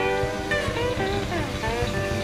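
Live blues band playing, with a lead guitar line of bent and sliding notes over the accompaniment.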